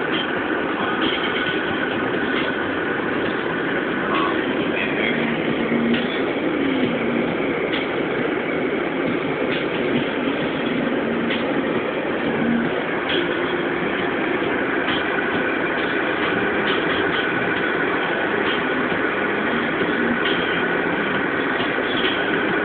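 Steady road and tyre noise of a car driving on a winter freeway, with occasional faint ticks.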